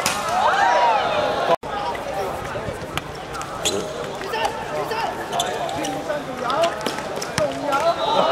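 Voices of players and onlookers calling out over a hard-surface football pitch, with several sharp thuds of the ball being kicked. The sound cuts out for an instant just after one and a half seconds in.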